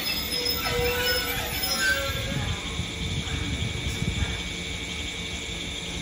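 JR 205 series electric train pulling slowly into a station platform as it brakes to a stop. A few brief wheel or brake squeals come in the first couple of seconds, then a low rolling rumble with repeated knocks of the wheels over the track.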